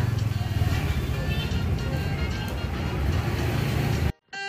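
Steady low background rumble with faint music playing.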